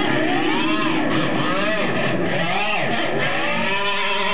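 Distorted electric guitar played live through an amplifier, its notes sliding up and down in pitch in repeated swoops.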